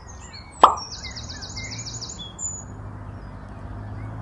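A single short plop with a quickly falling pitch about half a second in, the loudest sound, as the rubber duck goes into the trailer. It is followed by a fast trill of about ten high notes and scattered bird chirps over a low steady hum.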